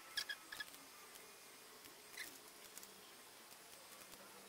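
Near-quiet room with a few short, faint high-pitched squeaks: a quick cluster right at the start and a single one about two seconds in.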